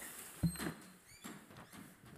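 Soft thump and rustling, with a brief run of short, high, falling squeaks a little over a second in: furniture and handling noise as a person gets up from a desk.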